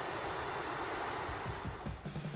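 Water rushing steadily over a small rocky waterfall, a continuous hiss.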